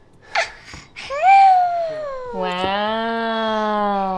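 A baby's long drawn-out vocal sound, starting about a second in: a high squealing 'ahh' that rises and then falls, breaking into a lower, steady held note for about two seconds.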